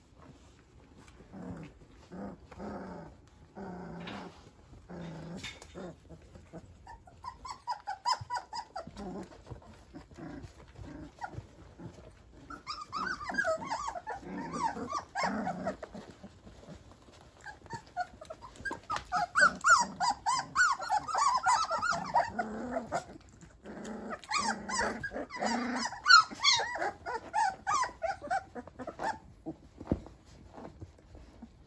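Young standard poodle puppies squealing and whining in repeated bursts as they jostle under their mother to nurse, with low growling in the first few seconds.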